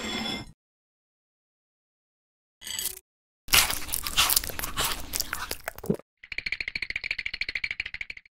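Crisp crunching bites, the dubbed sound of a popsicle being eaten, from about three and a half seconds to six seconds, after a short swish at the start and a brief burst near three seconds. Then a fast, even pulsing rattle runs to the end.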